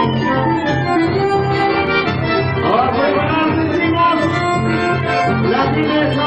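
Chamamé played live on button accordion and bandoneón, which carry the melody over strummed acoustic guitar and a steady bass line pulsing about twice a second.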